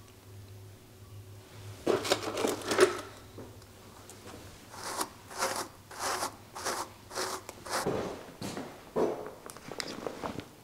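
Rustling and clicking of items being handled in a soft toiletry bag about two seconds in. Then a bristle brush is worked in quick repeated strokes, about two a second, for a few seconds.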